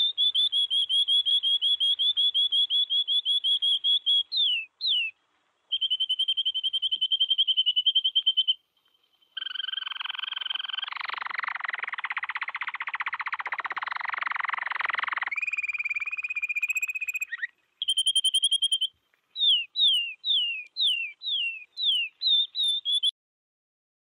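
Recorded canary song: fast high trills, then a harsh buzzing rattle in the middle, then a run of quick downward-slurred whistles near the end. The song is being auto-panned by the plugin, its movement driven by the peaks of a sidechained flamethrower loop.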